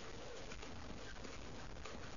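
Faint steady hiss and low hum of a desk microphone, with a few soft clicks from computer keys as a date is typed into a form.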